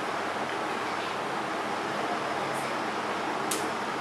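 Steady fan-like hiss of room noise, with two short soft ticks late on.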